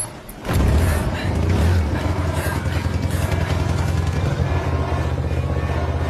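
A motor vehicle engine running steadily with a low rumble, cutting in suddenly about half a second in, under music.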